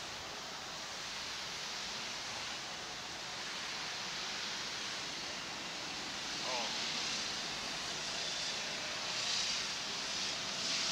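Steady rushing wind noise on the ride-mounted camera's microphone as the slingshot capsule is lowered back down, with one brief, wavering squeak-like chirp about six and a half seconds in.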